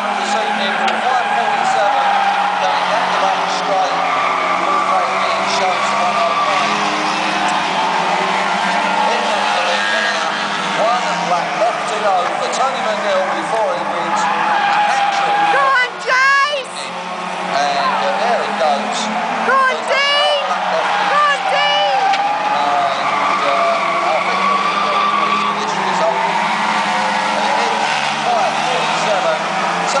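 Several Euro Rod race cars' engines running together around the oval, their pitch rising and falling as they accelerate out of the bends and pass close by. Sharp rev swoops come around the middle, as a car goes past near the fence.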